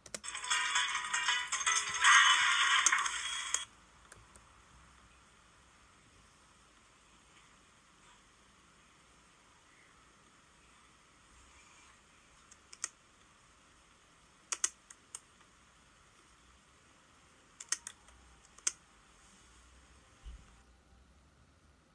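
Music plays from a laptop's speakers for about three and a half seconds and cuts off abruptly. Near silence follows, broken in the second half by a few sharp clicks that come singly or in quick pairs.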